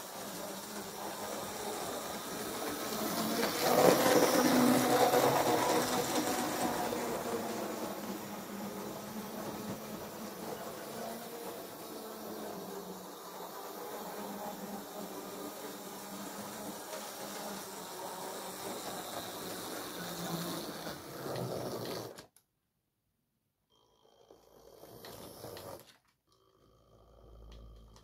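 Model railway locomotive running on the layout, its small electric motor whirring with the wheels on the rails, loudest about four seconds in and then steady until it stops abruptly a little over twenty seconds in.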